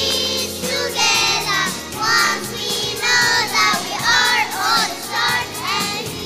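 Young children singing a song through microphones over instrumental accompaniment, in sung phrases of a second or so with wavering pitch.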